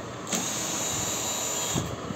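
Cordless drill-driver running for about a second and a half with a steady high whine, backing out a screw from an angle grinder's gear housing.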